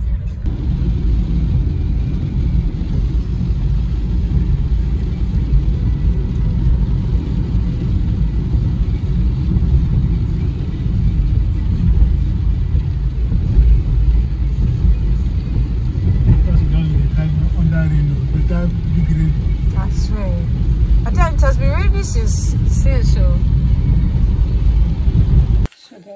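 Car cabin noise while driving on a wet road: a steady, loud low rumble of engine and tyres, which cuts off abruptly just before the end.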